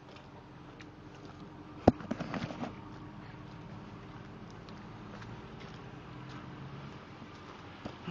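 Jeep Grand Cherokee engine idling low and steady, with one sharp knock about two seconds in followed by brief voices.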